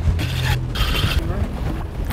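Steady low rumble of a boat's engine with wind and water noise, broken by a couple of short rushes of hiss, one at the start and one about a second in.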